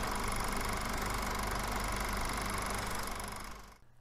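A steady, machine-like buzzing drone that fades in, holds evenly, and fades out just before the end.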